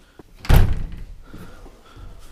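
A door being pushed open and banging once, a loud thud about half a second in with a short decaying tail.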